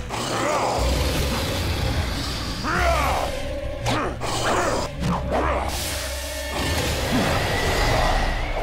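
Animated fight soundtrack: a sustained rushing blast of wind over action music, with short cries about three and five seconds in.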